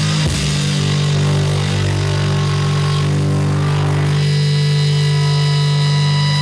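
Live heavy metal band letting a distorted electric guitar chord ring out without drums, steady and sustained; about four seconds in, higher sustained tones join the held chord.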